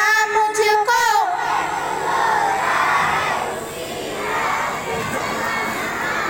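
A group of children singing together stops about a second in, and then a crowd of children shouts and cheers together, many voices at once.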